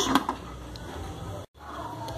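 Faint steady kitchen background noise with no distinct events, after the last word of speech; it drops out abruptly for an instant about one and a half seconds in.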